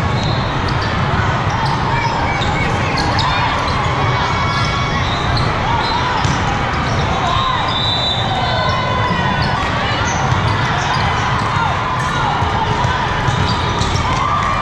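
Volleyball hall sound: balls being struck and bouncing on the court floor in repeated sharp hits, sneakers squeaking, and a steady mix of players' and spectators' voices, all echoing in a large hall.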